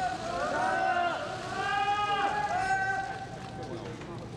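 Several voices calling out at once, loud and high-pitched, overlapping and dying away near the end.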